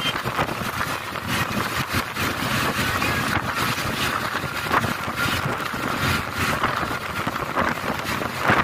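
Wind rushing and buffeting on the microphone together with the road and engine noise of a moving vehicle, a steady rush with frequent crackling gusts.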